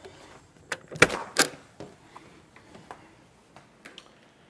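A house's front door being opened: latch clicks and a couple of knocks, the loudest about a second in, then a few lighter taps.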